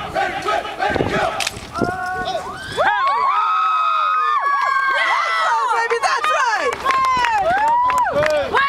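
A crowd of young voices cheering and screaming, many high shouts overlapping; it swells and holds loud from about three seconds in.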